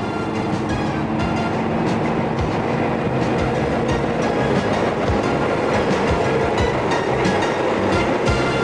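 An NS 2200-series diesel locomotive runs close by at low speed, its engine running steadily, and then its coaches roll past with the wheels knocking over the rail joints.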